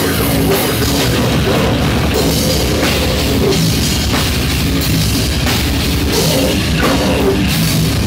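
A death metal band playing live at full volume: distorted electric guitar and bass over fast drumming, a dense, steady wall of sound with no break.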